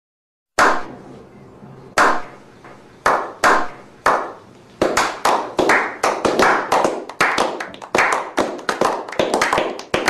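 A slow clap: one person's hand claps, widely spaced at first, are joined by more people clapping and speed up into quicker, overlapping clapping.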